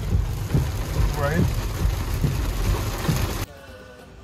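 Rain falling on a car's roof and windows, heard from inside the car, with a brief vocal sound a little over a second in. The rain sound cuts off abruptly about three and a half seconds in, giving way to a much quieter background.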